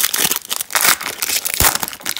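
Foil trading-card pack wrapper torn open and crinkled in the hands, a quick run of sharp crackles and rustles.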